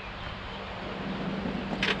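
Steady outdoor background noise that grows slowly louder, with a brief sharp hiss near the end.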